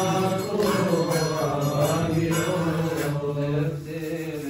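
Men's voices chanting a Coptic hymn together in unison, with long held notes.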